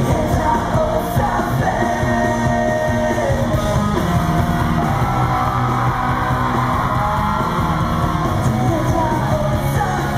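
Rock band playing live: electric guitar and sung vocals with yelling, loud and continuous, heard through the arena's sound system.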